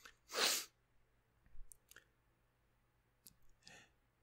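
A short, breathy exhale close to the microphone about half a second in. Faint mouth clicks follow, then a softer breath near the end.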